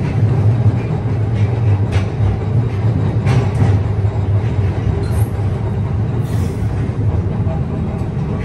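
TECO Line electric streetcar running along its track, heard from the front cab: a steady low rumble, with a couple of light clicks.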